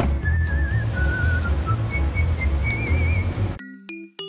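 Background music: a whistled melody over a bouncy bass beat. About three and a half seconds in it cuts off and a sparse, chiming keyboard tune begins.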